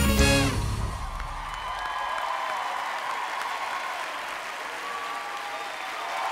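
Dance music ends on a final hit within the first second, followed by a studio audience applauding and cheering.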